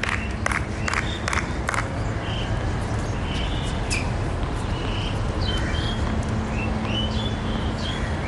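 Tennis ball knocks on an outdoor hard court: a quick series of sharp knocks in the first two seconds, a few more a couple of seconds later as the rally goes on. Steady crowd murmur with short bird chirps throughout.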